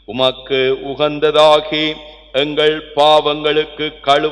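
A priest's male voice chanting a Tamil Mass prayer in a level recitative, the phrases held on steady notes, with a brief pause about halfway.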